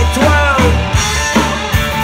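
Live punk rock band playing: two electric guitars, bass guitar and drum kit, with steady drum hits. A note slides in pitch about half a second in.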